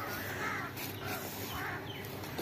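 A bird calling outdoors twice: once about half a second in and again about a second and a half in.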